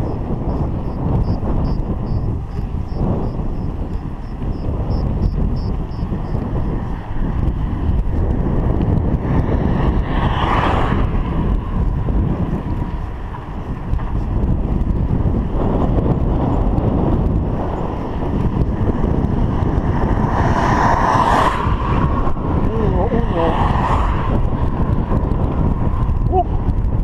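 Wind buffeting the microphone of a chest-mounted action camera on a moving bicycle, a loud, steady rumble. A few brief louder swells rise over it about ten seconds in and twice more near the end.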